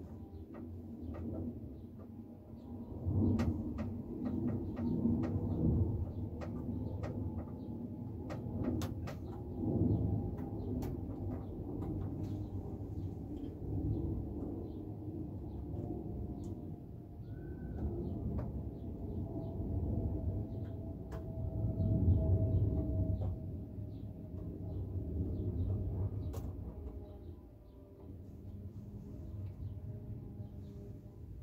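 Light clicks and taps of small plastic model railway pieces being handled and set down on the layout, over a low, uneven rustling rumble.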